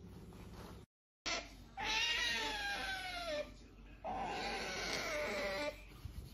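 A pet otter calling with two long, whining, pitched calls. The first falls in pitch over about a second and a half. The second, a moment later, holds steadier and dips near its end.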